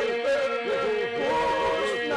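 Albanian iso-polyphonic male folk singing: a group of voices holds a steady drone while solo voices sing ornamented, wavering melodic lines and long held notes above it.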